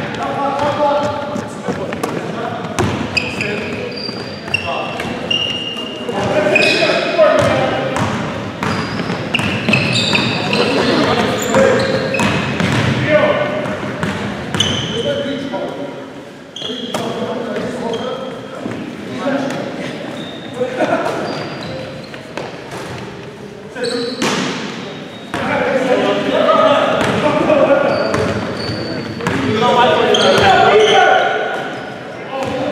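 Basketball game on a hardwood gym court: the ball bouncing and thudding on the floor, short high sneaker squeaks, and players' shouts and calls, all echoing in the large hall. Play quiets briefly about halfway through, then picks up again.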